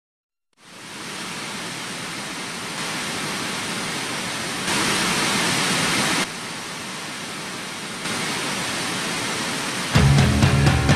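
Steady, even hissing noise with no tone in it. It starts about half a second in and jumps up or down in level abruptly several times.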